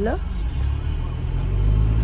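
Van engine and road rumble heard inside the cabin, deep and steady, growing a little louder and slightly higher about a second and a half in as the van pulls away from the toll booth.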